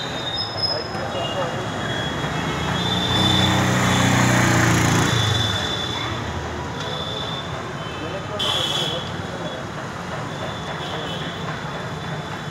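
Street traffic noise, with a motor vehicle passing: its engine hum swells about three seconds in and fades out by about five and a half seconds.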